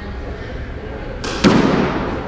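Squash serve: a racket strikes the ball with one loud, sharp hit about one and a half seconds in, ringing off the court walls.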